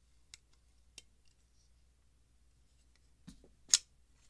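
Freshly reassembled RMOR Squirrel titanium flipper knife being worked in: a couple of faint clicks from handling the closed knife, then near the end one sharp, loud snap as the blade flips open and locks.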